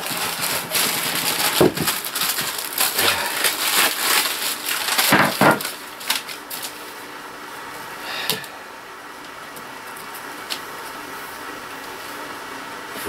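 Cardboard and paper packaging rustling and crinkling as a box is unpacked, with scattered clicks and knocks. About halfway through it dies down to a low background with a couple of single clicks.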